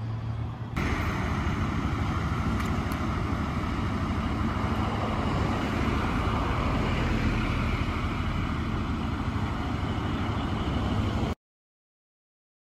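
Steady engine idling close by, a low hum under a dense rush of noise, stepping up in level about a second in and cutting off abruptly near the end.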